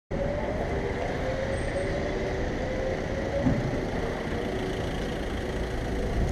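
Street traffic noise: a steady rumble of road vehicles, with a faint engine hum that sinks slightly in pitch over the first few seconds.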